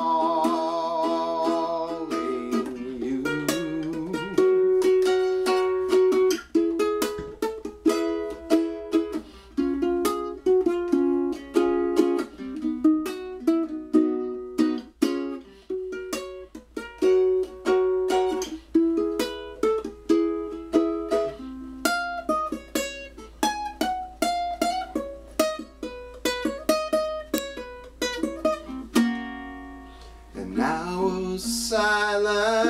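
Solo ukulele picking out an instrumental melody, note by note, with quick plucked notes that each die away. In the first two seconds a held sung note with vibrato fades out.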